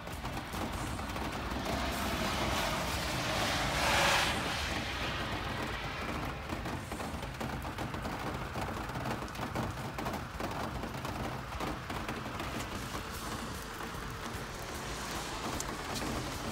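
Steady rain on a wet outdoor lot, a hiss with dense crackly patter. A rushing hiss swells to a peak and drops away about four seconds in.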